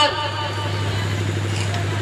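Steady low hum with an even background noise, level and unchanging, in a pause between phrases of amplified speech.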